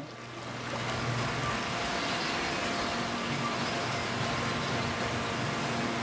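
Steady rushing background noise of a marine fish farm's holding and packing area, from water circulating through tanks and equipment, with a faint steady hum. It swells over about the first second, then holds even.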